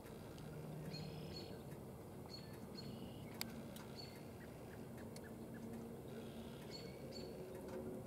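Small birds chirping faintly in the background: short, high notes repeated every second or so, over a faint low hum, with a single sharp click about three and a half seconds in.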